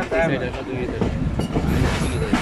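Passenger train running along the track, heard from the open door of the coach: a steady low rumble of the wheels on the rails, with a sharp click about a second and a half in and people's voices over it.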